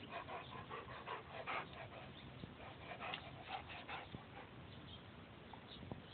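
A dog breathing in short, quick, faint breaths, an irregular run of them that dies down after about four seconds.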